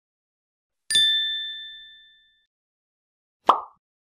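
Logo-animation sound effects: a bright bell-like ding about a second in that rings out over about a second and a half, then a short pop near the end.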